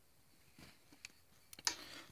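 Very quiet room tone with a single soft click about halfway through and a brief faint noise near the end.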